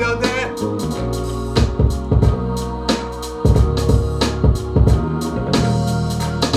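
Hip-hop beat playing back over studio speakers: drums and bass under sustained choir-pad chords. The drums thin out about a second in and come back in full at about three and a half seconds.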